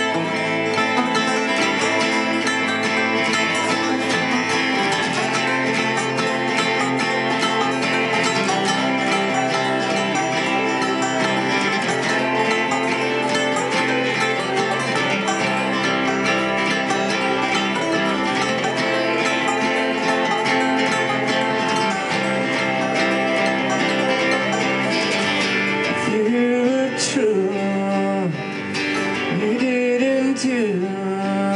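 Live band playing an instrumental stretch of a country-folk song, led by plucked strings. Pitch-bending notes come in over the last few seconds.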